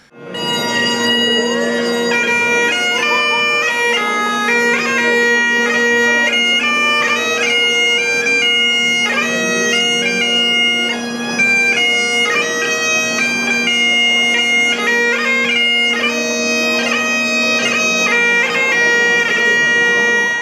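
Great Highland bagpipe played solo: steady drones sound under a brisk melody of quickly changing chanter notes.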